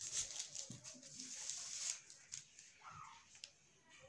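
A marker scraping along a ruler on brown pattern paper as lines are drawn. It is a dry, scratchy sound for about two seconds, followed by fainter paper and ruler handling with a few light ticks.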